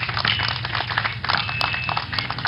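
Scattered hand clapping from an outdoor crowd, a dense run of sharp claps, with a faint high whistling tone coming in twice.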